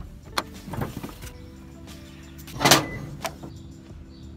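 Car door worked from inside: clicks of the interior release handle and latch in the first second, then a louder, short thud a little before three seconds in as the door swings and shuts, over soft background music.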